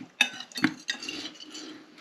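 Metal fork clinking and scraping against a plate while scooping peas, with a few sharp clinks, the loudest two within the first second.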